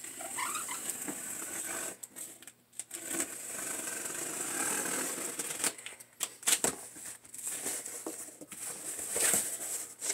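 Packing tape being slit and pulled off a cardboard box, in several stretches of rasping and scraping, then cardboard flaps knocking and rustling as the box is opened.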